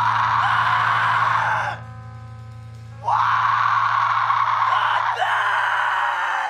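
Screamed vocals in long, loud bursts over a low note held steadily underneath, with a quieter pitched stretch between the screams about two seconds in.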